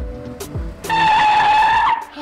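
Music with a deep drum beat gives way, just under a second in, to a loud, steady car tyre screech lasting about a second.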